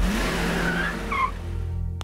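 Film score holding low notes under a rush of noise that starts at the cut and fades out within about a second and a half, with a few short high chirps about a second in.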